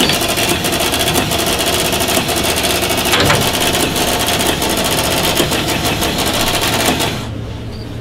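Electronic cash register's receipt printer running, a dense rapid clicking that stops abruptly about seven seconds in.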